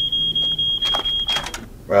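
Household smoke detector alarm sounding one steady high-pitched tone, set off by smoke from the blocked fireplace; it cuts off suddenly about one and a half seconds in.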